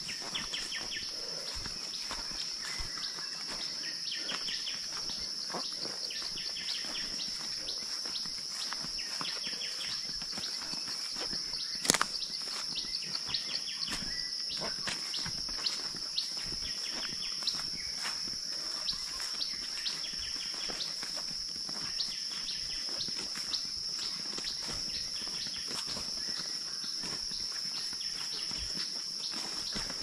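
Forest ambience: a steady high-pitched insect drone with birds chirping now and then, and footsteps crunching and brushing through undergrowth. One sharp snap about twelve seconds in is the loudest sound.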